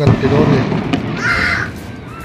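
People's voices, loud and jumbled, with a short harsh cry about a second in.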